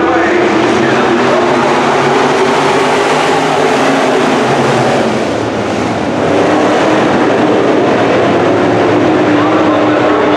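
A field of IMCA Sport Modified dirt-track race cars running hard in a pack, their V8 engines blending into one loud, continuous noise with pitches rising and falling as they go through the turns. The sound eases slightly about five seconds in, then grows louder again as the pack comes closer.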